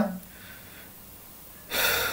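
A short, sharp in-breath through the mouth, close to the microphone, about a second and a half in, after a quiet pause.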